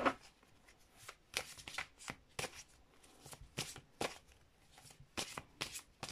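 A deck of oracle cards being shuffled by hand: quiet, irregular clicks and slaps of cards, about three a second.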